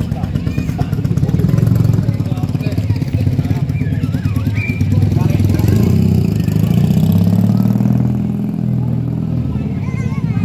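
Street traffic: a vehicle engine running close by, its pitch rising and falling during the second half, with voices in the background.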